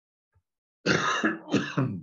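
A man coughing to clear his throat, in three rough bursts starting about a second in: one longer, then two short ones.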